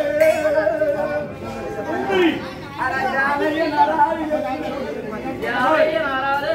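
Overlapping voices of a gathered group of people talking and calling out over each other.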